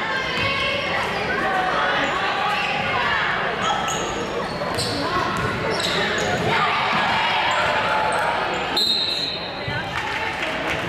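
Basketball game in a gymnasium: a ball bouncing on the hardwood and sneakers squeaking in short high chirps, over spectators' voices echoing in the hall.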